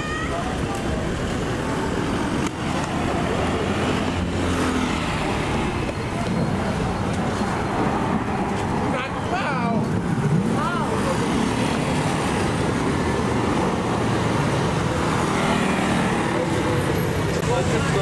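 Busy street ambience: steady road traffic with the hum of passing vehicle engines, and voices of passers-by now and then, most clearly about nine to eleven seconds in.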